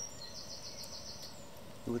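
Quiet outdoor background with a quick run of high-pitched chirps, about eight a second, lasting about a second, from a small animal. A man's voice starts right at the end.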